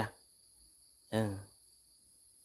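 Steady high-pitched chirring of crickets, two unbroken high tones. A man's short spoken 'oh' comes in about a second in.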